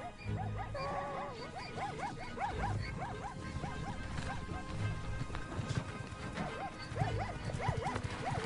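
Zebras barking: a rapid series of short, yelping calls, the alarm calls of a herd under attack by lions, over background music.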